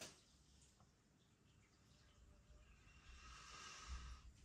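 Near silence, then a faint, slowly building inhale through the nose in the second half: a man sniffing the aroma of a glass of beer.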